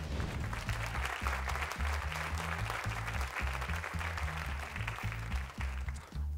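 Studio audience applauding over game-show background music with a rhythmic bass line.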